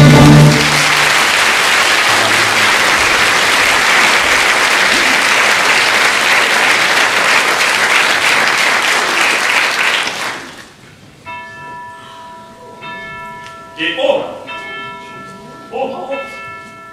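An orchestra's final chord cuts off and theatre audience applause follows for about ten seconds before dying away. Then a clock bell begins striking with a new stroke every second or so, each ringing on, with brief voices between the strokes.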